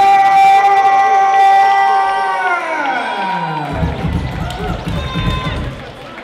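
A ring announcer's long, drawn-out call of the winning boxer's name, held on one pitch for a couple of seconds and then sliding down. A crowd cheers after it.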